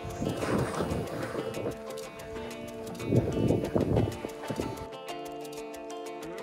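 Background music with held notes. For the first four seconds or so it is joined by the rough scraping of skis sliding on packed snow, which then stops and leaves the music alone.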